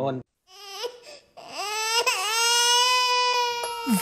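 A baby fussing briefly, then crying in one long cry that rises, wavers once and holds steady for about two seconds.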